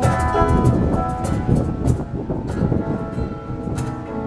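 Live acoustic band music: two acoustic guitars strumming chords with hand percussion keeping a steady beat, an instrumental passage without singing.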